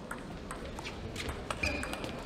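Table tennis rally: the ball clicks sharply off the rackets and the table several times, the hits coming faster in the second half. Near the end there is a short high squeak.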